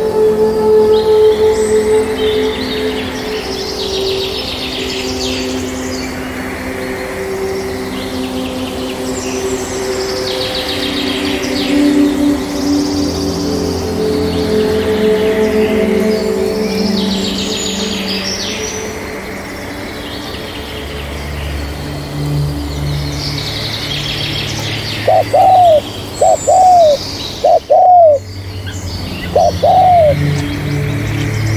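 Small birds chirping and twittering over soft music with long held notes. Near the end a dove coos several times, loud and low.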